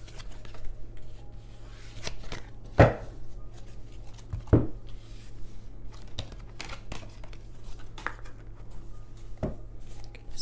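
A tarot deck being shuffled by hand: cards rustling and ticking against each other, with a few sharper knocks, the loudest about three and four and a half seconds in.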